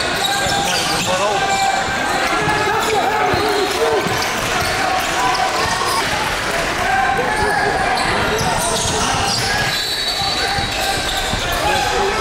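Live sound of a youth basketball game in a gym: a basketball bouncing on the hardwood court, over a steady mix of indistinct players' and spectators' voices.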